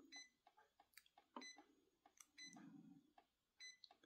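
Faint short electronic beeps from a Brother HL-L6400DW laser printer's touch control panel, about half a dozen spread over a few seconds, each sounding as a menu arrow is tapped.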